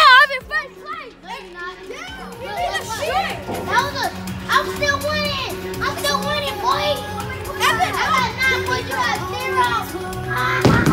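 Children's voices, high and animated, chattering and calling out over background music with steady held notes.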